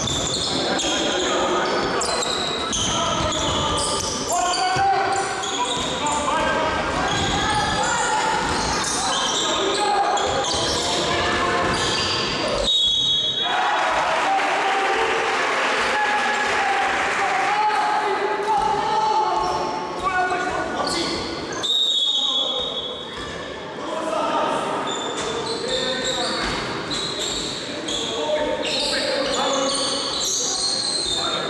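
Basketball game in a sports hall: a ball bounces on the hardwood floor among the echoing shouts and calls of players and spectators. A referee's whistle gives two short blasts, a little before halfway and again about three-quarters through.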